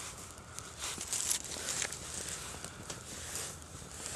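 Small fire of dry, hair-like tree tinder burning, with a soft hiss and scattered faint, irregular crackles.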